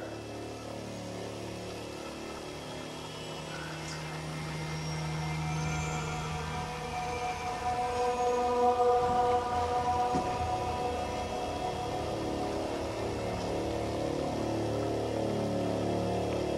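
Low, sustained droning tones layered together, like an eerie suspense music bed, swelling slightly from about halfway through.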